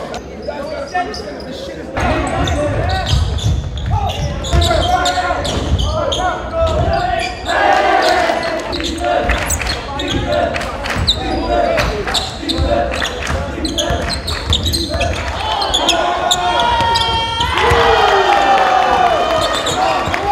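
A basketball bouncing on a hardwood gym floor, with voices over it.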